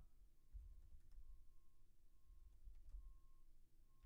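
Near silence, with a faint low hum.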